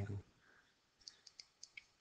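Faint computer-mouse clicks, about six small ones in quick succession starting about a second in.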